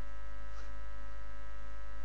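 Steady electrical mains hum from the microphone and public-address system, a low buzz with many steady overtones that holds level throughout.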